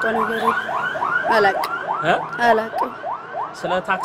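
Electronic alarm siren sounding a rapid run of short rising whoops, about four a second, with voices behind it.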